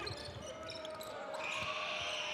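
Basketball dribbled on a hardwood court, a few thumps, in a large arena hall, with a faint steady tone beneath.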